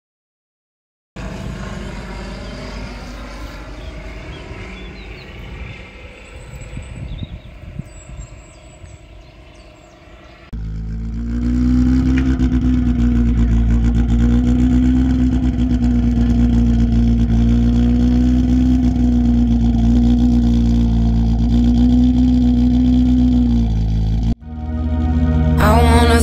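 A rally car's engine running, a Renault Clio: quieter and uneven at first, then from about ten seconds in louder and steady, held at an even speed.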